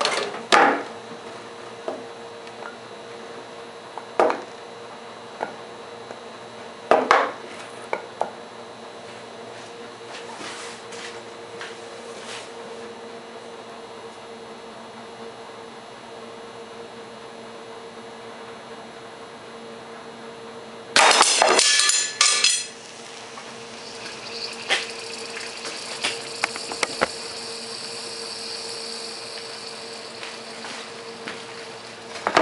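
Clinks and knocks as a metal-tabbed lithium iron phosphate cell is handled and set back in place, then a crossbow shot hits the cell with a loud burst of impact lasting about a second and a half. Within a few seconds the punctured cell starts venting, a hiss of escaping vapor with crackles that grows louder toward the end as it discharges internally and boils.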